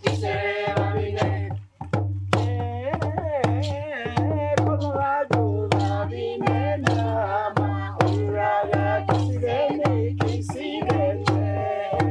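A group of voices singing a traditional Central Province Papua New Guinea song, accompanied by a steady beat of hand drums.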